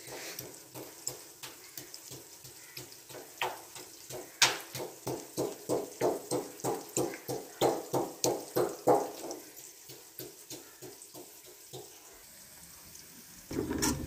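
Wooden pestle pounding green chillies and ginger into a paste in a stone mortar: a steady run of thuds, about two or three a second, clearest in the middle and fading out near the end.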